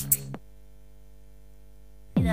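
Electronic dance track with a kick drum and hi-hat beat that stops about half a second in, leaving only a steady electronic hum, a held drone, until the beat comes back.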